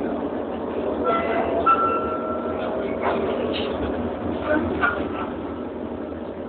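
Passenger train running, heard from inside the carriage: a steady rumble, with a high steady whine for about a second and a half starting about a second in, and a few short knocks.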